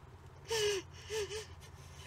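A woman's sobbing gasp, a breathy cry falling in pitch about half a second in, followed by two short shaky whimpers, over the low steady hum of a car's cabin.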